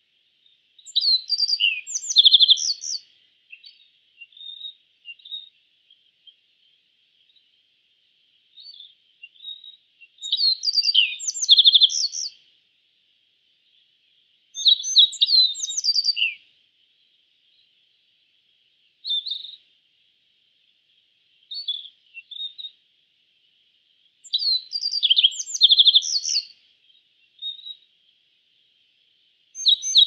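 A bunting singing: four short phrases of rapid high notes, each about two seconds long, with a few single short notes in the gaps, over a steady faint high hiss.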